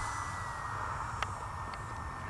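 Radiolink D460 flying wing's 2204 1600KV brushless motor and propeller whining from the air as it passes overhead, a thin steady tone that slowly drops in pitch, over a low rumble. A single brief click comes about a second in.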